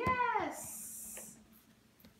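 A small toy basketball drops through the hoop and knocks on the floor, under a high voice's drawn-out exclamation that falls in pitch and ends about half a second in. A brief hiss follows for nearly a second.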